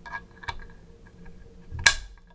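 A steel hex bit being pushed into the head of a Wera Zyklop Mini 1 bit ratchet: a couple of light metal clicks, then one sharp metallic click near the end as the bit seats in the socket.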